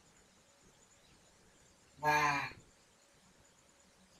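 A single drawn-out pitched vocal sound, rich in overtones and lasting a little over half a second, about two seconds in, with its pitch sinking slightly at the end; otherwise faint room noise.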